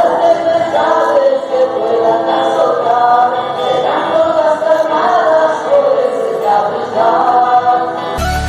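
Choir singing a hymn in several voices, with long held notes and slow changes in pitch, during the distribution of communion.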